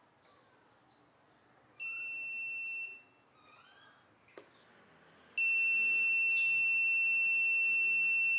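Arduino current monitor's buzzer giving a steady high beep for about a second, starting about two seconds in, then sounding again without a break from about five and a half seconds in. The beeping is the alarm for the load current crossing the 0.2 A threshold as a bulb is unscrewed. A single click falls between the two beeps.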